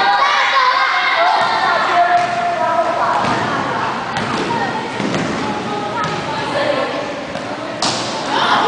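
Sound of a youth basketball game in a gym: children's voices calling out over dull thuds of the ball bouncing, with a sharp knock near the end.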